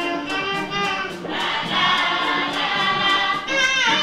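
Live Afrobeat band with a female backing chorus singing held notes together over a steady ticking beat. Near the end the voices slide down in pitch.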